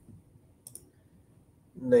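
A couple of faint clicks at a computer, close together, in an otherwise quiet room.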